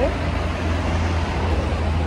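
Steady street traffic noise, a constant low rumble of passing cars with no single vehicle standing out.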